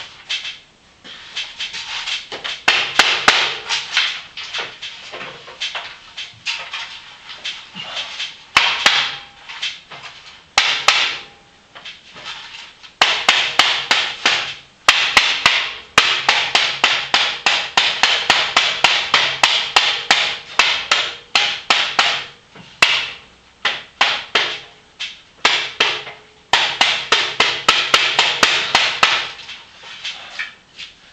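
Rapid, hard knocks, about five or six a second, coming in bursts of a few seconds with short pauses between them.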